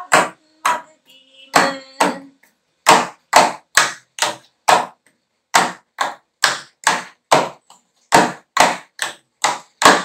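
Small hand drum struck with the bare hand in a steady rhythm, about two beats a second, in runs of four or five beats with short pauses between them.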